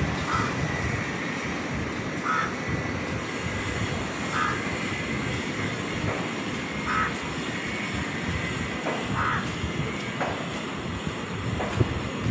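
Steady background rumble of distant traffic, with a short faint chirp repeating about every two seconds.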